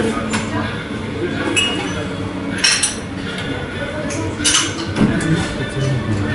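Café bar clatter: a few sharp clinks of glassware and dishes over a steady background of room noise and distant voices.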